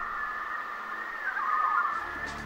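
Eerie held high tones from a horror trailer's soundtrack: two steady pitches that waver and bend slightly.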